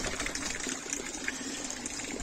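Steady rush of running water filling a garden pond.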